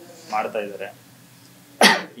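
A man gives one short, sharp cough into his fist near the end, after a brief murmur of voice.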